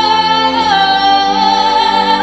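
A woman singing a long sustained high note into a microphone over backing music, the note stepping down slightly in pitch about halfway through and then held.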